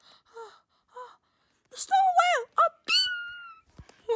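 A child's voice making wordless character cries: short, faint high calls at first, then louder wails from about halfway through, ending in one long high cry that slowly falls.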